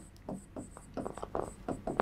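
Pen writing on an interactive whiteboard screen: a string of faint, short scratches and taps as letters are written.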